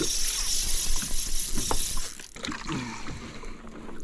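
Steady hiss of rushing, splashing water that cuts off sharply a little over two seconds in.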